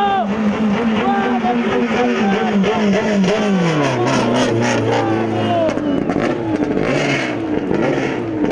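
Touring race car engine running, its pitch dropping about halfway through and staying low for a couple of seconds as the car slows, then picking up again, with an excited voice over it.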